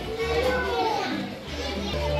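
Children's voices and chatter over background music with a deep bass line.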